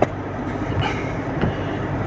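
Steady low rumble of passing heavy traffic or rolling stock, heard from inside a car cabin.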